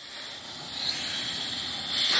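Compressed shop air hissing steadily from a rubber-tipped blow gun pressed into the high-pressure oil pump's supply line of a 6.0 Powerstroke diesel, weaker for the first half second: an air test to find the high-pressure oil leak that keeps the engine from starting.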